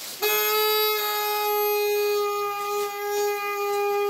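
A party horn blown in one long, steady, buzzy note, held for about four seconds.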